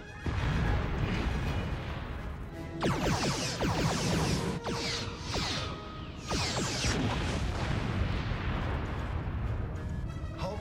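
Sci-fi starship battle sound effects over a music score: a heavy low rumble as the ship takes weapons fire, then from about three seconds in a run of about five sweeping whooshes falling in pitch.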